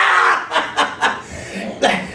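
A man chuckling: a few short, breathy bursts of laughter, strongest at the start and again near the end.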